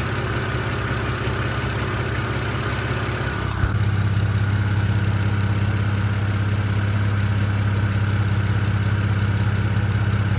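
BMW E92 engine idling in the engine bay with a steady hum. For the first four seconds or so, before an MoS2 anti-friction oil treatment, the lifter tick is more obvious and the engine sounds louder overall. Then the sound changes to the same engine after the treatment, with the lifter tick quieted and a smoother run.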